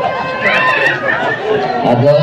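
Speech only: a man talking, with some chatter.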